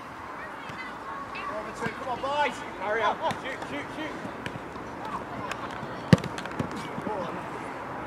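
Players' shouts across an outdoor football pitch. About six seconds in comes a single sharp thud of a football being kicked.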